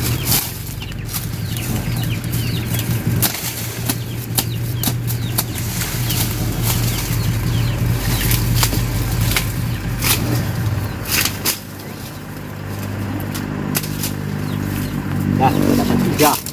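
Machete chops and cracks on sugarcane stalks at irregular intervals, mixed with the rustle of dry cane leaves, over a steady low hum.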